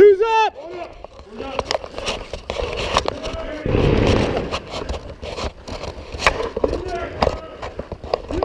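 Clatter and rustle of tactical gear and a rifle moving against a helmet-mounted camera, with scattered sharp clicks and knocks throughout and a spell of heavy rubbing on the microphone about four seconds in.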